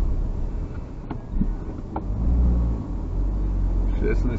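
Car cabin noise while driving: a steady low rumble of engine and tyres that swells briefly in the middle, with a couple of light clicks.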